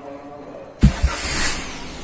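Daihatsu Gran Max engine being started: it catches suddenly a little under a second in with a couple of low thumps and a loud flare, then eases back to a steady idle.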